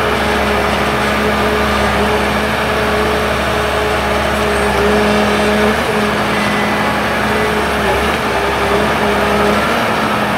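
Ecolog 574E forwarder's diesel engine running steadily at working revs while its hydraulic crane swings, the pitch wavering slightly a couple of times past the middle.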